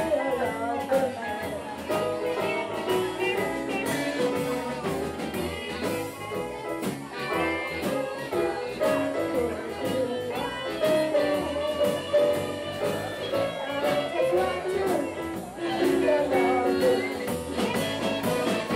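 Live blues band playing: drums, electric guitar, keyboard and saxophones.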